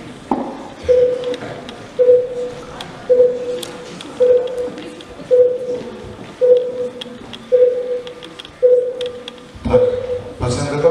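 Heart-monitor beep sound effect played over the hall's speakers: a steady single-pitched beep repeating evenly, a little slower than once a second, nine beeps in all, starting about a second in.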